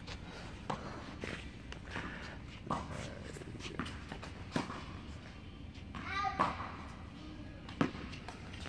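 Tennis ball struck by racket and bouncing on an indoor hard court during a rally: a string of short sharp pops, roughly one a second, with a gap in the middle, in a large hall. A brief voice calls out about six seconds in.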